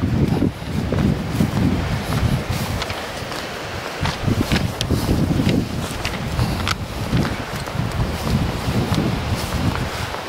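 Footsteps swishing and crunching through tall dry grass, with gusty wind noise on the microphone.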